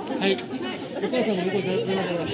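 Several people talking at once in overlapping chatter, with a man's voice among them.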